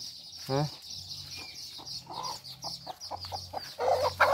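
A chicken clucking in a run of short, repeated calls that grow louder near the end. It is an agitated, aggressive bird.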